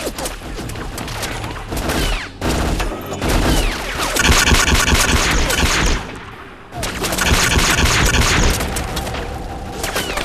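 Film-style gunfire in a firefight: many rapid shots with booms mixed in, loudest in two long stretches of rapid fire starting about four and about seven seconds in, with a short lull between them.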